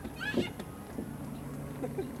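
A brief high-pitched vocal sound from a person, rising and falling in pitch, with scattered bits of background voices. A low steady hum comes in about halfway through.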